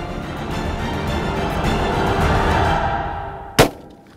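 Tense background music swells and fades, then a single sharp rifle shot from a Winchester Model 70 about three and a half seconds in.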